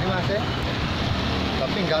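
Steady outdoor street noise at an even level, traffic on the road mixed with wind on the microphone, with a man's voice breaking in briefly just after the start and again near the end.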